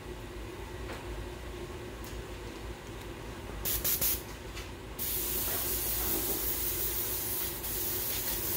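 Harbor Freight quick change airbrush spraying paint. A few short bursts of hiss come about three and a half seconds in, then a steady spraying hiss from about five seconds on.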